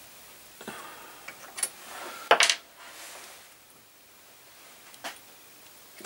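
Small metallic clicks and knocks from an Allen key and a stepped drill-press motor pulley being handled on its spindle as the grub screw is slackened, with one sharper metal knock about two and a half seconds in.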